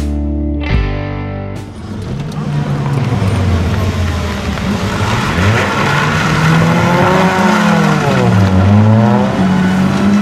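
Ford Sierra RS Cosworth's turbocharged four-cylinder engine at full effort on a rally stage. Its pitch rises and falls several times as the car accelerates, lifts and changes gear, with tyre and road noise under it. It starts about a second and a half in, after music cuts off.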